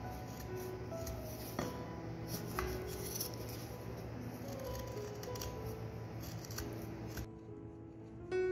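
Carving knife slicing shavings from a wooden spoon's head, a scatter of short scraping cuts that stop shortly before the end, under soft background music.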